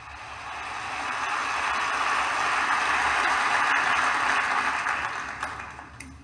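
Recorded audience applause from the start of a CD track playing through hi-fi loudspeakers. It swells in over the first few seconds and fades away near the end.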